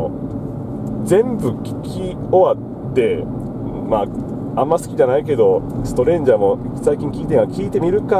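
Steady road and engine noise inside a moving car's cabin, under people talking.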